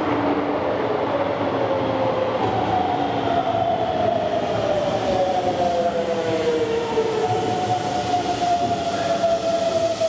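Keisei 3700 series electric train braking into a station: its Toyo GTO-VVVF inverter and traction motors whine in several tones that fall steadily in pitch as it slows, over continuous wheel-on-rail rumble.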